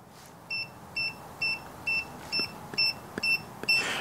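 Pen-style Tic Tracer non-contact voltage tester beeping: eight short, high-pitched beeps, about two a second. The beeping means it is detecting voltage on a live cable, showing that the tester works.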